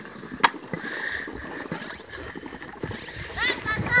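Homemade water bottle rocket on a wooden launch pad releasing: a sharp pop about half a second in, then a hiss of pressurised air and water spraying out for about a second. High children's shouts near the end.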